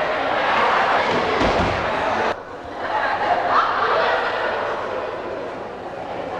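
A gym full of children cheering and chattering all at once, with a low thump about a second and a half in. The crowd noise cuts off abruptly a little over two seconds in, then builds back up.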